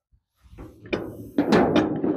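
A short drum sting: a few quick drum hits starting about half a second in, with a cymbal-like hiss that fades away.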